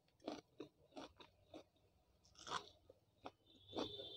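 Close-up mouth sounds of eating Maggi instant noodles with vegetables: a run of soft, separate chewing clicks, the loudest about halfway through. Near the end a thin, steady whistling sound comes in as more noodles are drawn in at the lips.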